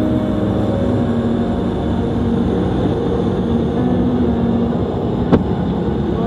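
Steady rush of air and a low drone inside a Grob glider's cockpit while it climbs on aerotow, with a single sharp click about five seconds in.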